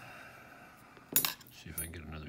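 A single sharp metallic clink about a second in, then a faint, brief high ring, from the brass parts of a Gerda Euro lock cylinder knocking together as it is taken apart and its pins and springs come out.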